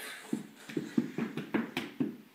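A young child imitating a fast rocket with his voice: a breathy "whoosh" at the start, then a quick run of short pulsing sounds, about five a second.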